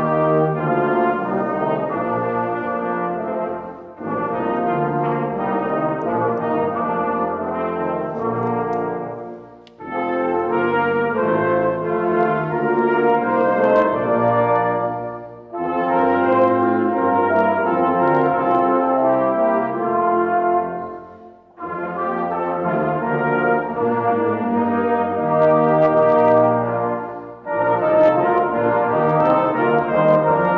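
A small brass choir of trumpet, trombone and a third brass instrument playing a hymn tune in slow chordal phrases of about six seconds each, with a short breathing gap between phrases.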